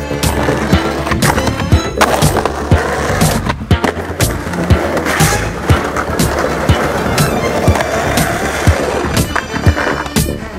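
Skateboard wheels rolling on pavement with repeated sharp clacks of the board, mixed with background music with a steady beat.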